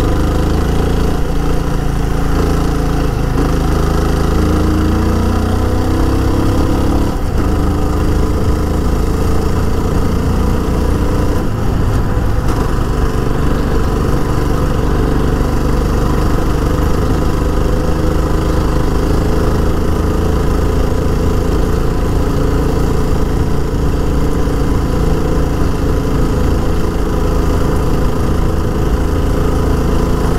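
Yezdi Scrambler's single-cylinder engine running under way on the open road, its note climbing over the first several seconds as the bike picks up speed, then holding fairly steady.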